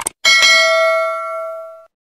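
A short click, then a bright bell ding that rings for about a second and a half before cutting off sharply: the subscribe-button and notification-bell sound effect.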